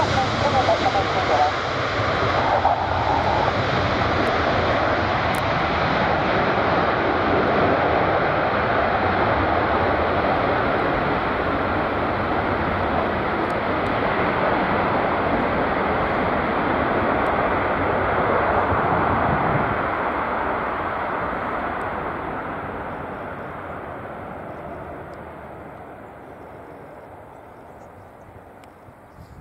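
Boeing 747 jet engines going by: a steady rushing jet noise that holds for about twenty seconds, then fades away as the aircraft moves off, the higher part of the sound dying first.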